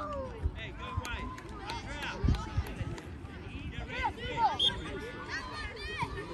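Overlapping voices of players and spectators at a youth soccer game: scattered calls and shouts mixed into a general hubbub. A couple of brief low thumps come a little past two seconds in.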